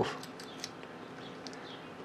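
A few faint, light clicks of a steel drill-chuck key being handled in a small brass holder with a spring-loaded latch.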